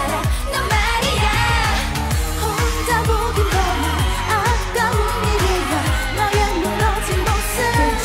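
K-pop dance song with a woman singing over a steady driving beat and bass.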